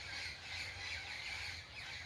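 Faint outdoor background with distant birds calling, their wavering calls thin and far off.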